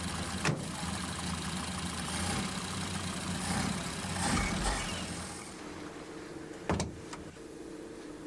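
A car engine running, heard from inside the car, its noise swelling about four seconds in and then dying down. There is a short click about half a second in and a thud near the end.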